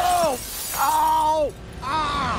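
The tail of a plate-glass window shattering, loose shards tinkling down, fading within the first half second. A person then cries out twice in long, held exclamations that fall in pitch.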